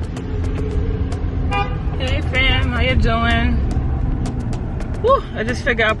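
Steady low rumble of a car's engine and road noise heard inside the cabin, with scattered light clicks. About one and a half seconds in, another person's voice speaks for around two seconds.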